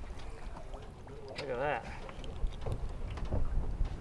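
Low wind rumble on the microphone aboard a boat at sea, with a short faint voice about a second and a half in and a few faint knocks.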